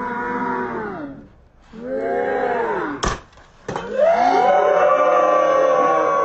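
Loud, drawn-out wailing cries, the pitch bending and arching, with a single sharp crack about three seconds in. From about four seconds in, several long, steady cries overlap.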